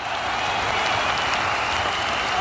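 Burning-fire sound effect for an animated logo: a steady, even crackling rush of noise.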